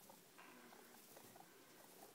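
Near silence, with a few faint ticks and rustles from guinea pigs moving in hay.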